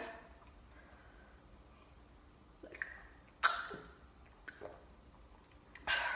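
Quiet room tone broken by a few short breathy sounds from a person catching breath while chugging soda, the loudest about halfway through.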